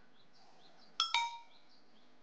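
Two quick metallic dings about a second in, each ringing briefly, over faint birdsong.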